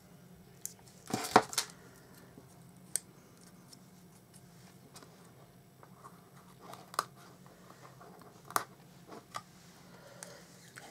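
Folded card stock handled and pressed by hand: a short burst of crackling and rustling about a second in, then scattered light clicks and paper rustles.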